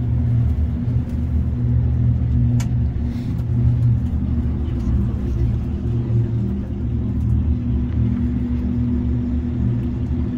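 Steady low rumble inside a moving cable car cabin, the carriage running along its ropes, with a faint click about two and a half seconds in.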